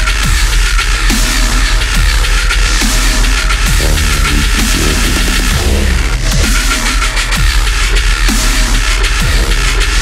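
Heavy deathstep/dubstep track: loud, dense electronic music over a constant deep sub-bass, with repeated falling-pitch bass hits and drums. Between about four and six seconds in, the texture briefly changes before the pattern returns.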